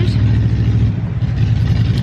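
Wind buffeting the camera's microphone: a loud, steady low rumble.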